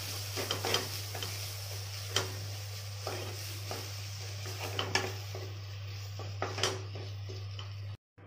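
A spoon stirring and scraping potato filling around a stainless steel kadai, with irregular clicks of metal on the pan over a low sizzle of frying.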